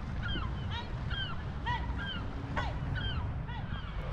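Several birds calling in a quick series of short, repeated calls, about three a second, some overlapping. These are the calls of birds flying around a drone hovering overhead and harassing it.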